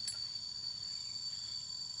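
Steady, shrill insect chorus, an unbroken high-pitched drone, with a faint click just at the start.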